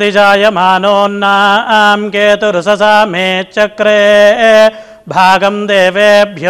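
Vedic blessing mantras chanted in a steady, near-monotone recitation, with a short break for breath just before the end.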